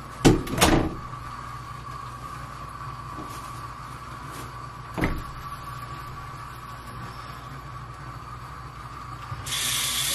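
A couple of sharp knocks of a door or cupboard just after the start and another about five seconds in, over a steady electrical hum. Near the end a tap is turned on and water starts running.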